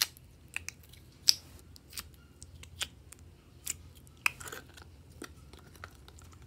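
Clear slime being worked out of a thin clear plastic tub by hand: irregular sharp clicks and small pops, the loudest about a second in and again about four seconds in.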